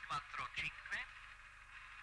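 A brief, tinny radio voice call over a steady radio hiss during the first second. The hiss carries on after the voice stops.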